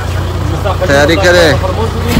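Men's voices talking over a steady low rumble.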